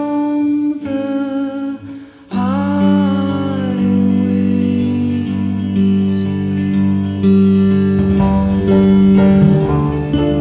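Small live band playing an instrumental passage: two short held guitar chords, then about two seconds in the full band comes in with guitars, bass and sustained cello and clarinet lines. Percussion grows busier near the end.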